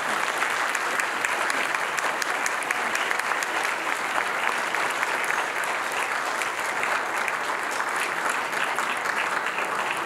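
Audience applause: many people clapping in a dense, steady stream.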